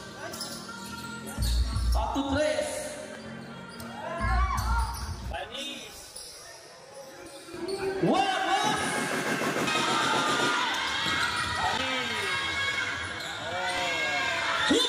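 Live basketball game on a hard court: sneakers squeaking and the ball bouncing, mixed with shouting from players and spectators. The crowd noise grows louder about eight seconds in.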